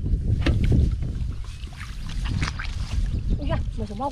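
Footsteps sloshing through shallow, muddy paddy water, with wind rumbling on the microphone.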